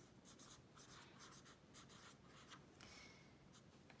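Faint scratching of a felt-tip pen writing on lined notebook paper, in short strokes.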